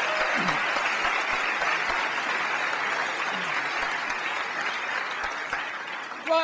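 Lecture-hall audience applauding, a sustained round of clapping that eases slightly toward the end.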